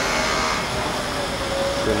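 Steady outdoor city noise, mostly a continuous hiss of traffic, with a faint voice in the background.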